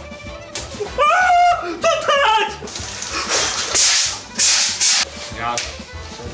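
A block rubbed in quick strokes along a ski base, hand-waxing the ski, about two strokes a second in the second half. Before that comes a short stretch of pitched vocal or musical sound.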